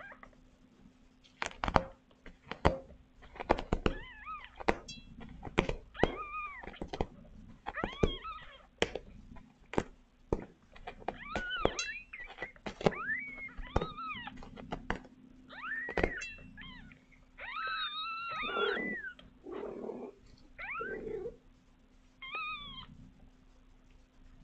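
Young kittens mewing over and over, short high cries that rise and fall in pitch, with frequent sharp clicks and knocks between them and a faint steady hum underneath.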